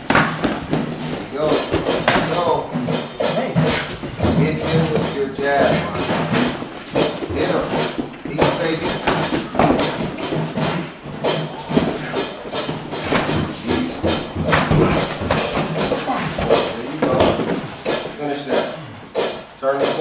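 MMA sparring: gloved punches and grappling land as many irregular thuds and slaps, with bare feet shuffling on the mats, over background voices.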